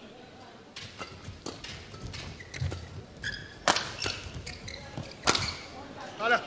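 Badminton rally: a quick exchange of sharp racket-on-shuttlecock hits, roughly one or two a second, the loudest two about midway and near the end. Short high squeaks come in between the hits.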